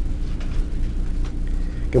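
Felt-tip marker strokes on paper, faint and scratchy, as letters are written, over a steady low hum.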